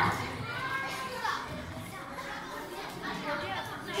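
Faint children's voices chattering in the background, with no one speaking up close.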